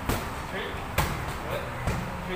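Boxing gloves hitting focus mitts: three sharp smacks about a second apart.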